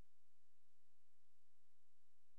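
Faint steady electrical hum with light hiss: the recording's background noise floor, with no other sound.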